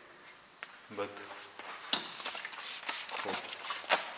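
A hand handling a car's plastic tail light, giving a run of light clicks and taps in the second half, between a few short spoken words.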